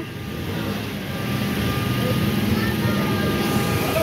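Busy street crowd noise with indistinct voices over the steady drone of an engine running.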